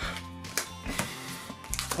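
Quiet background music with steady held tones, over which a few light clicks and taps come from trading cards being handled and set down on a playmat.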